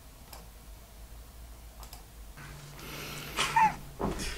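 A few faint computer-mouse clicks in a quiet room. Video playback then starts with a steady low hum, and a short loud burst of voice comes near the end.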